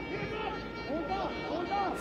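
Football stadium ambience: a steady crowd murmur with scattered voices shouting from the stands or the pitch.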